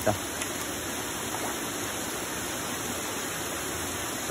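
Steady rush of water splashing and bubbling into round plastic fish tanks from their inflow pipes.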